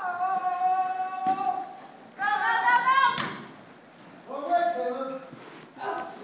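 High-pitched hollering of people cheering on riders in three long calls: one held steady for about a second and a half, a second that rises in pitch, and a shorter wavering one.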